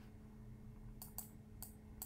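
Three faint, sharp clicks from computer input devices in the second half, over a low steady hum.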